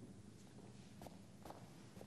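Near silence, with two faint footsteps about a second in, half a second apart.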